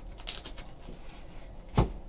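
Handling of a hard plastic graded-card slab: a few light clicks and rustles at first, then a single knock near the end as the slab is set down on the table.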